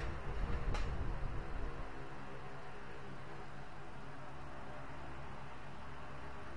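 Steady background noise with a low rumble that fades out about two seconds in, and a single sharp click just under a second in.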